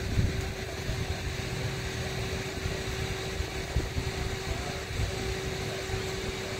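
Steady low rumble with a constant mid-pitched hum, as from machinery running.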